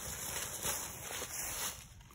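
Red-shouldered hawk beating its wings and thrashing in dry leaves as it struggles against a rat snake coiled around it: a flapping, rustling noise that dies away near the end.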